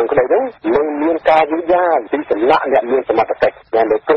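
Speech only: a news reader talking in Khmer without pause, thin and narrow-sounding as on a radio broadcast.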